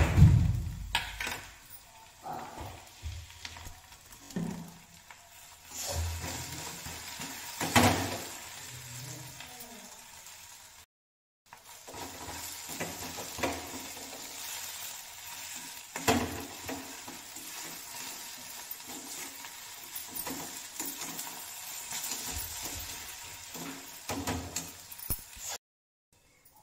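Boiled potatoes frying in a kadhai on a gas burner with a steady sizzle. A metal spatula scrapes and knocks against the pan now and then as the potatoes are stirred.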